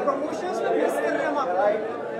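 Indistinct voices talking over a steady background of crowd chatter in a busy hall.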